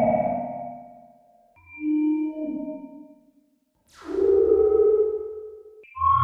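Eurorack modular synthesizer feedback patch: a Z-DSP cathedral reverb fed back through a Warps frequency shifter and a Ripples low-pass filter, giving ping-like, echoing tones in separate swells that fade away. A louder swell comes in about four seconds in, opening with a quick high falling sweep.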